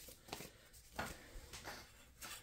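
Faint rustling of paper dollar bills being handled and set down, a few short soft rustles.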